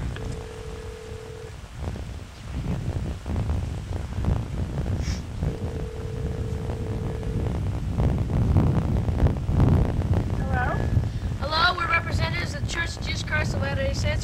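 Gate call-box intercom ringing out through its speaker: two long, steady ring tones, the first about a second and a half and the second about two seconds, spaced about five seconds apart, over wind noise on the microphone. A voice comes in over the last few seconds.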